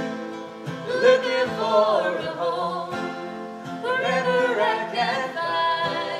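A folk song: acoustic guitars strummed and picked, with a woman singing a melodic line over them.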